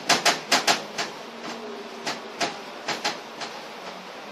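A quick, irregular run of sharp taps or clicks, several a second at first, then thinning out and stopping about three and a half seconds in, over a faint steady hum.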